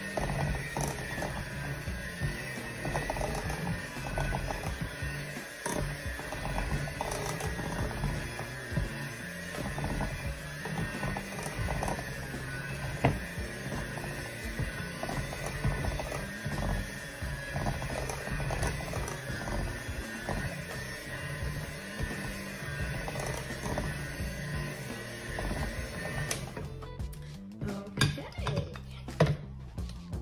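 Electric hand mixer running steadily as it beats thick cookie dough in a glass bowl, then switching off suddenly near the end. Music plays throughout.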